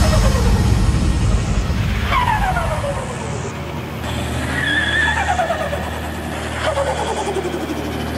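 Car engines rumbling at a standstill, revved three times with the pitch falling away after each rev.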